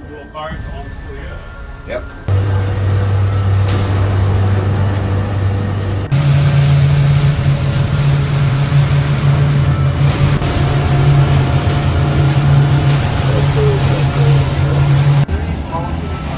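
The boat's outboard engines running under way at speed, a loud steady low drone with the rush of the hull through the water. The drone steps abruptly to a different pitch and level about two seconds in, again about six seconds in, and once more near the end.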